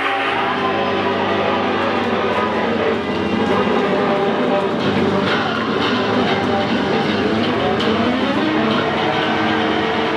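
Live rock band playing loud: distorted electric guitars and a drum kit with cymbal hits, a dense noisy wall of sound.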